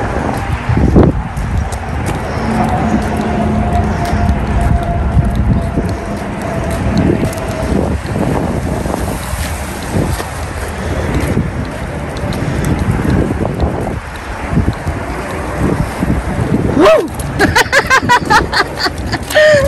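Wind noise on the microphone outdoors, with street traffic going by.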